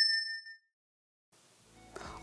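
Notification-bell 'ding' sound effect of a YouTube-style subscribe animation: a bright, high chime that rings and fades over about half a second, with a faint second chime about half a second in.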